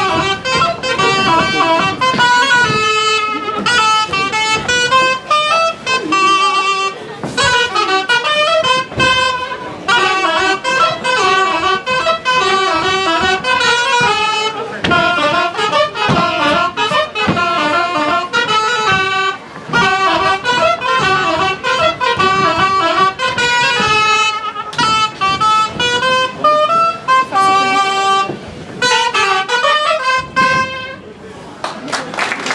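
Live traditional folk dance music on reedy wind instruments: a lively melody played in short repeated phrases, with brief breaks every few seconds and sharp beats underneath.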